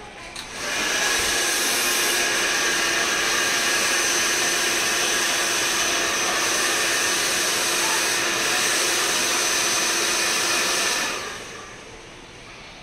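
Handheld hair dryer blowing hair dry. It switches on about a second in, runs at a steady pitch and level, and cuts off about a second before the end.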